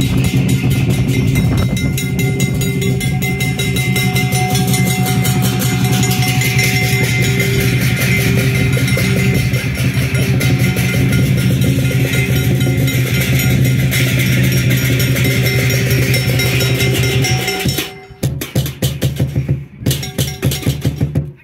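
Chinese lion dance percussion, a large drum with cymbals and gong, beating a fast, continuous rhythm over a steady ringing tone. Near the end the ringing stops and the beats come as separate, spaced strikes.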